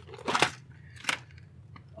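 Clear plastic parts organizer box being handled: a short rustle, then one sharp plastic click about a second in.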